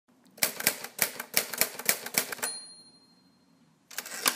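Typewriter keys clacking in quick succession, about a dozen strokes, then the carriage-return bell ringing once. A few more keystrokes start just before the end.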